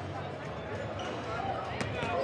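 A basketball bouncing on a hardwood gym floor, with one sharp bounce near the end, over the murmur of spectators' voices in the gym.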